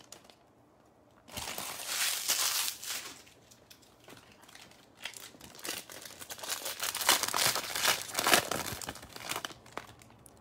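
Foil wrapper of a 2020 Bowman Draft baseball card pack crinkling and tearing as it is opened by hand. It comes in two spells: from about a second in, and again from about five seconds in until shortly before the end.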